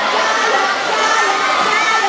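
A crowd of teenage schoolchildren shouting and cheering, many high voices overlapping at a steady loud level, cheering on relay runners.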